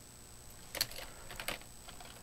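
Computer keyboard being typed: a few separate, fairly quiet keystrokes in the second half.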